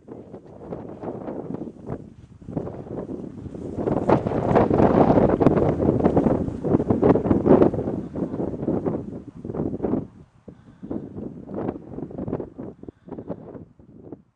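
Wind gusting on the microphone over the swish of tall dry grass being walked and dragged through, with a stronger gust in the middle.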